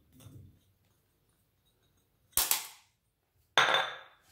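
A faint patter of biscuit crumbs tipped from a bowl into a pan of liquid, then two sharp knocks a little over a second apart as a glass bowl and a wooden spoon are put down on a granite worktop and against a stainless steel pan; the second knock is the louder and rings briefly.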